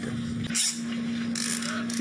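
Ratcheting handcuffs being clicked shut: two short bursts of ratchet clicks, about half a second in and again near the end, over a steady low hum.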